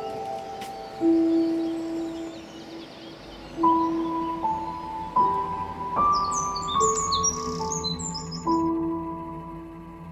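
Slow instrumental background music of long held notes, a new note or chord every second or two. Quick high bird chirps come in about six seconds in and last about two seconds.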